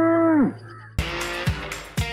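The tail of a long, drawn-out moo that holds steady and then falls away about half a second in. About a second in, guitar music with a steady beat starts.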